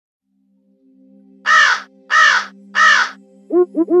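Three harsh, crow-like caws, each under half a second and spaced about 0.6 s apart, over a steady low drone of background music. A voice starts near the end.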